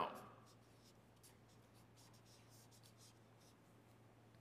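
Faint scratching of a felt-tip marker writing characters on paper: a quick run of short strokes through the first three seconds or so, over a low steady hum.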